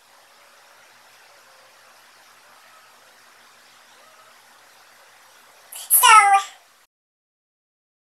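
Faint steady hiss, then about six seconds in a single short, loud meow-like cry lasting under a second. Right after it the sound cuts off to dead silence.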